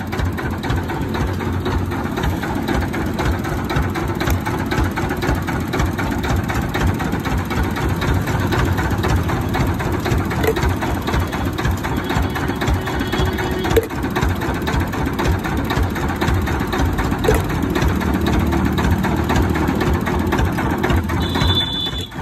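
A motorised juice machine running steadily and loudly, with a few light knocks along the way.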